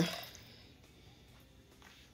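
Near silence: quiet room tone after the last word of speech trails off, with a faint soft tap near the end.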